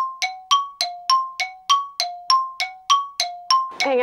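A bright chime ringing in a quick, even run of about a dozen dings, alternating a lower and a higher note, then stopping just before the end.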